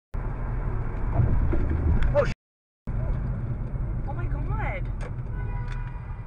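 Steady low road and engine rumble heard from inside a moving car, with a brief drop-out to silence about two and a half seconds in. A few short indistinct voice sounds ride over it.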